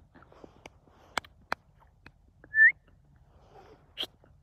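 A short, sharp, rising whistle close by, about two and a half seconds in, calling the dog, with a couple of faint clicks about a second before it.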